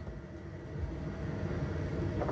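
Steady low background rumble with no distinct events, growing slightly louder in the second half.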